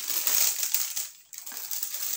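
Tissue paper crinkling and rustling as a cardboard beauty box is opened and the paper inside is handled, in two stretches with a short break just after a second in.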